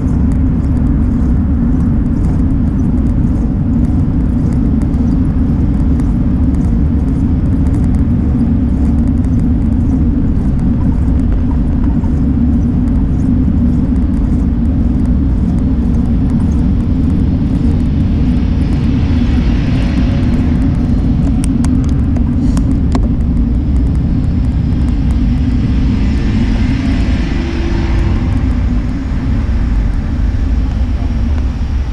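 Steady low rumble of wind buffeting a bicycle-mounted camera's microphone while riding, mixed with road noise, and motor traffic swelling past twice, about two-thirds of the way in and again near the end.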